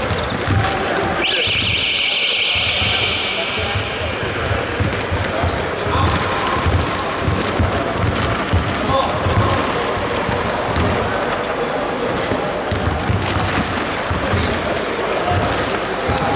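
Basketball bouncing on a hardwood court in a large, echoing hall, with players' voices in the background. A high-pitched sound starts suddenly about a second in and fades away over about three seconds.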